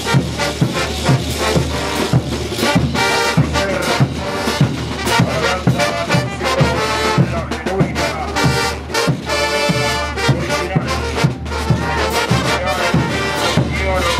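Bolivian brass band playing a morenada live: brass melody with sousaphones, over a bass drum beating about twice a second and cymbals.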